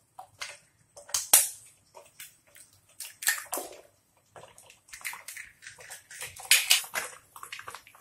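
Eggs frying in hot oil in a frying pan, sizzling and spattering in irregular crackles. Mixed in are sharp taps of a steel spoon cracking an egg shell open, and the eggs dropping into the oil.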